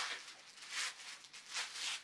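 Clear plastic dust cover on a floor speaker rustling and crinkling in several short bursts as the speaker is handled.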